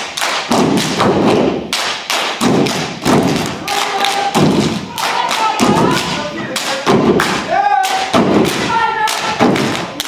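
Step team stomping and clapping in unison, a rapid, steady rhythm of sharp stomps and claps. Voices call out chant lines a few times over the beat.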